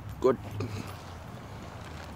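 A man's voice saying "good" once, over a low steady hum that fades about halfway through.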